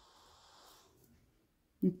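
Near silence: faint room tone, with a woman's voice starting just before the end.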